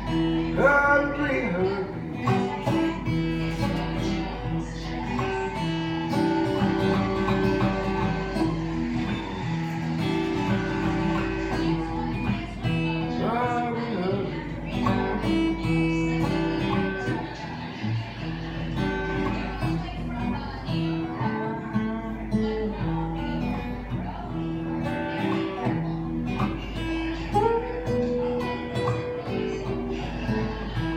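Acoustic guitar playing a steady, repeating blues accompaniment. A second melodic part bends in pitch at a few points: near the start, midway and near the end.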